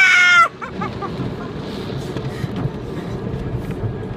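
A woman's high-pitched squeal, held for under a second at the start and falling slightly in pitch. After it, the automatic car wash machinery runs as a steady low rush, heard from inside the car.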